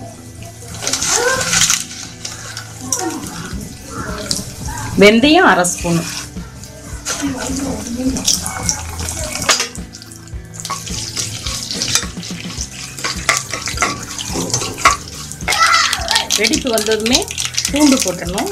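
Cumin and fenugreek seeds sizzling and crackling in hot sesame oil in an aluminium pot, with fine pops throughout.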